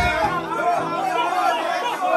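Dancehall music playing loud with the bass cut out about half a second in, under a crowd of men talking and singing along.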